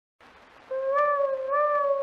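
Surface hiss of a 1928 shellac 78 rpm record, then, about 0.7 s in, a single held instrumental note from the orchestra's introduction that wavers and swells twice.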